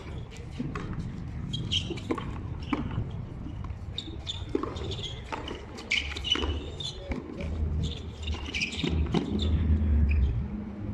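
A handball (frontón a mano) rally: the ball is struck by hand and smacks off the wall in irregular sharp hits, roughly one or two a second. A low rumble swells near the end.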